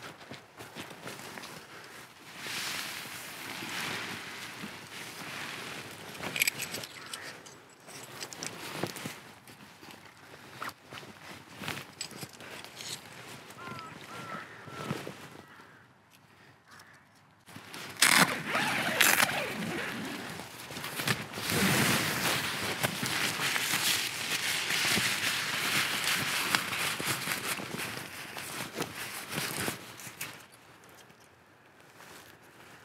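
Footsteps on woodland leaf litter and the handling of a backpacking tent: nylon fabric rustling and metal pegs clicking as it is pegged out and adjusted. The handling grows louder in the second half, with sharp clicks and then steady rustling of the fabric.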